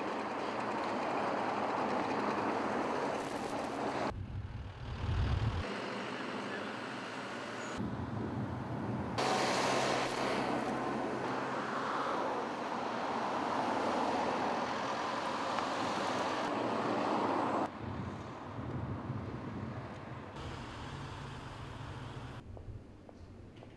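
Highway traffic noise, with cars and trucks passing. The sound changes abruptly several times, with a brief loud low rumble about four seconds in.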